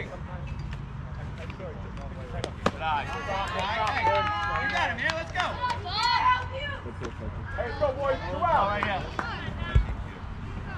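Several voices shouting and chattering, high-pitched like children calling out from the bench, with a couple of sharp clicks about two and a half seconds in and a low thump near the end.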